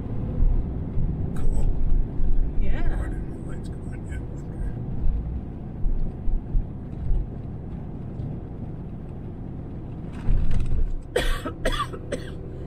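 Steady road and engine rumble inside a moving vehicle's cabin, with a person coughing hard several times near the end: a lingering cough left over from covid.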